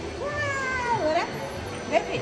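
A toddler's drawn-out vocal cry, a wavering 'oooh' that sags in pitch and then swoops sharply up, followed by a short rising squeal near the end.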